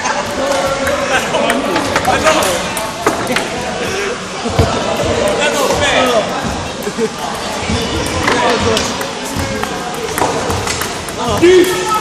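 Table tennis ball clicking repeatedly off paddles and bouncing on the table during a rally, over the chatter of many voices in a sports hall.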